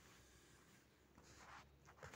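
Near silence, with faint, brief rubbing about a second and a half in and again near the end from drawing on a phone's touchscreen.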